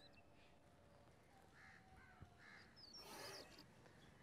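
Near silence, with three faint crow caws in the background about two seconds in.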